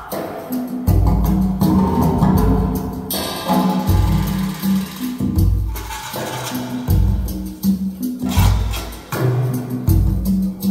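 Recorded music played back through a pair of Borresen C3 floor-standing loudspeakers: deep, repeating bass notes under a percussion beat with sharp clicks.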